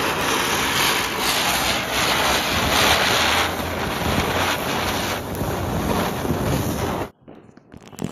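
Ground spinner firework (chakri) burning on a concrete floor. It gives a loud, steady rushing hiss as it spins and throws sparks, and the hiss cuts off suddenly about seven seconds in.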